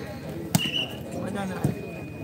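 A volleyball being struck: one sharp slap about half a second in, followed at once by a brief high-pitched tone. Faint crowd voices run underneath.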